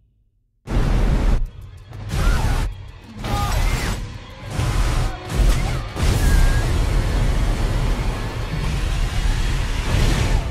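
Disaster-film sound effects of a tsunami flood: after a moment of silence, a string of loud crashing hits with deep rumble, each cut short, then from about six seconds in a continuous rush of water and rumble, with music beneath.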